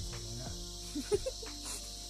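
Steady, high-pitched chirring of an insect chorus, with faint music and a soft regular beat underneath.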